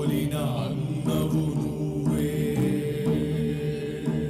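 Soundtrack music with chant-like vocals over steady sustained tones.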